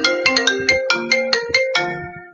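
Phone ringtone playing a quick marimba-like melody of struck, ringing notes; the phrase winds down near the end before it loops again.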